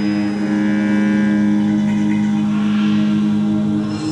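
Live experimental ensemble music: a loud, steady low drone held throughout, with fainter higher tones drifting in over it in the first half.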